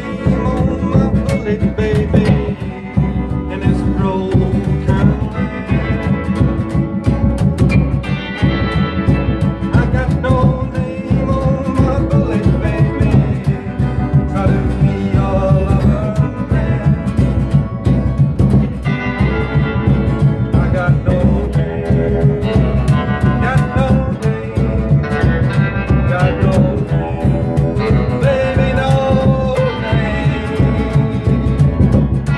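Live rockabilly trio playing an up-tempo song: strummed acoustic guitar, electric lead guitar and upright double bass keeping a steady, driving beat, with a man singing at times.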